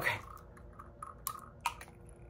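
A few faint light clicks and taps, about one to two seconds in, from fingers handling a small rhinestone-covered metal perfume atomizer case.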